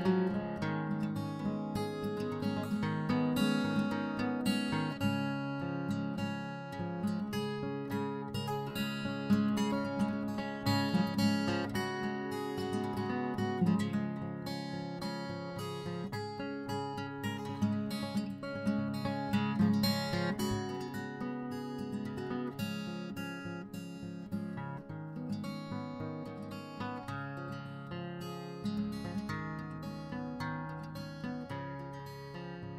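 Background music: plucked and strummed acoustic guitar playing steadily.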